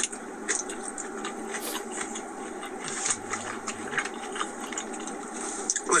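Steady low hum inside a car's cabin with a person chewing a mouthful of food, and many small, sharp clicks of a fork and takeout container.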